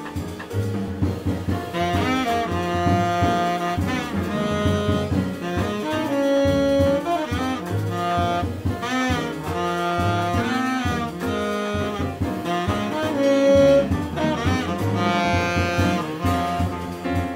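Tenor saxophone playing a jazz line over piano, double bass and drums, with a couple of longer held notes along the way.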